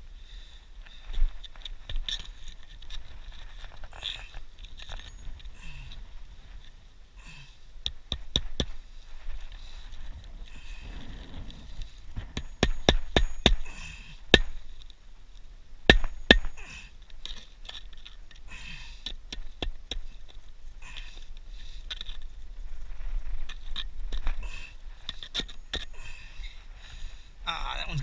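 Hand-nailing asphalt roof shingles with a hammer: sharp strikes, a few scattered taps and then quick runs of blows, the densest run about halfway through.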